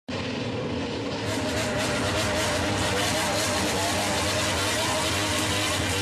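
Motorcycle engine running at a steady level with a gently wavering pitch, starting abruptly at the very beginning.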